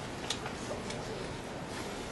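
Marker writing on a whiteboard: a string of short, irregular strokes and taps, the sharpest about a quarter-second in, over steady room hiss.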